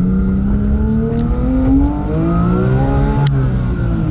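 Porsche 911 GT3 (997.2) 3.8-litre flat-six heard from inside the cabin under hard acceleration, its note climbing through the revs. The pitch drops back about two seconds in and climbs again, then falls after a sharp click a little past three seconds.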